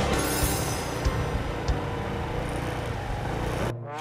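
Motor scooter running along a wet street with traffic noise, under background music; the road noise cuts off suddenly near the end, leaving the music.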